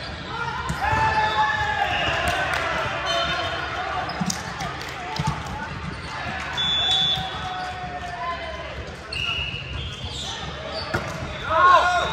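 Volleyball gym ambience in a large echoing hall: players' voices calling across the courts, with scattered thuds of volleyballs hitting the hardwood floor and hands. A loud shout comes just before the end as the next serve goes up.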